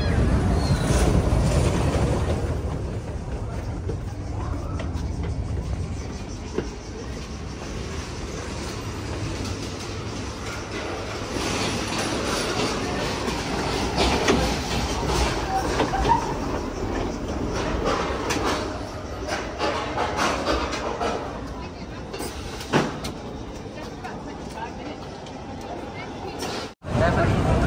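A mine-train roller coaster rumbling along its steel track, loudest in the first couple of seconds and then fading. After that, background voices and amusement-park ambience with a few scattered clicks.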